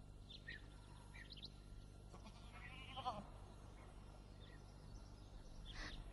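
A sheep bleating once, faintly, about three seconds in, with faint short bird chirps before it.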